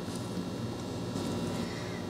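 A wooden craft stick stirring glitter-filled epoxy resin in a plastic cup, faint scraping over a steady low room hum.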